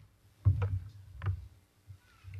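Two dull thumps about three quarters of a second apart, with low rumbling, picked up by the podium microphone as someone handles it or moves at the lectern.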